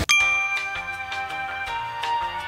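A bright bell-like chime struck once and ringing out, opening a gentle music track whose notes change near the end.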